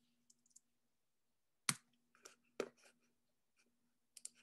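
A few sharp clicks of a computer mouse: a louder one a little before halfway and another about a second later, with a fainter click between them, over a faint steady low hum.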